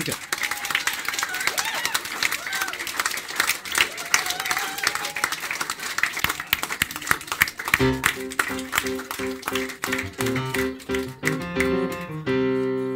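Audience applauding in a crowded room, with some voices among the clapping. About eight seconds in, music with held chords starts under the applause.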